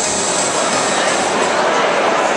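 Audience noise in a large hall: a steady roar of voices and applause, with the bass of the background music dropping away just after the start.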